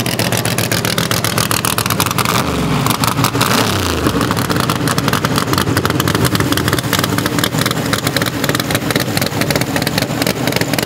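Drag-race engine of a first-generation Chevrolet Camaro running loud and choppy on the track, with a rev that falls away about three seconds in.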